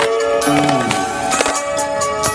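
Music soundtrack with a steady beat and a falling bass line about half a second in, with a skateboard grinding on a concrete ledge under it.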